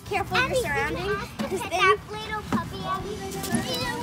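Several young children's voices chattering and calling out over one another as they play.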